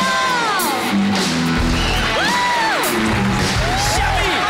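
Pop entrance music with a steady heavy beat, with rising-and-falling whoops from the studio audience over it.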